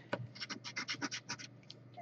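A coin scratching the coating off a scratch-off lottery ticket: a quick run of short, soft strokes, about seven a second, that stops about one and a half seconds in.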